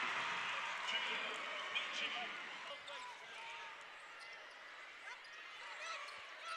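Court sound from a basketball game: a ball bouncing on the hardwood, sneakers squeaking and faint voices in the arena, fading quieter after about three seconds.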